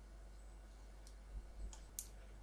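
A few faint computer mouse clicks, mostly in the second half, over low steady room noise.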